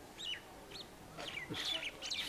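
A bird chirping in a series of short calls that rise and fall in pitch, faint against the room.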